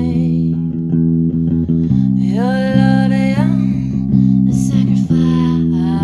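A worship song with held guitar chords that change about two seconds in and again about five seconds in. A voice sings a long note that slides upward about two seconds in and then holds.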